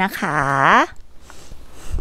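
A woman's voice drawing out the end of a sentence with a dipping, then rising pitch, followed by about a second of quiet outdoor background.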